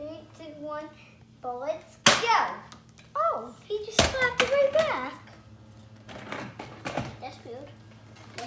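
A child's voice calling and exclaiming, with two loud, sharp snaps about two and four seconds in from a Nerf blaster being fired.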